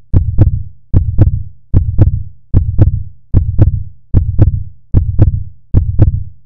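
A deep heartbeat-like double thump, two beats about a third of a second apart, repeating steadily about every 0.8 seconds: a loud outro beat under the logo card.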